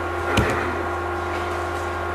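A single tap on a laptop key about half a second in, with a short low thump, over a steady low electrical hum.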